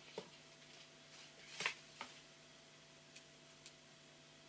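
A few faint clicks and taps of hands handling and opening a pack of scrapbook paper, the sharpest click about a second and a half in, over a faint steady hum.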